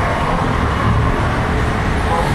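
Steady road traffic noise from passing cars and motor scooters: a continuous rumble and hiss.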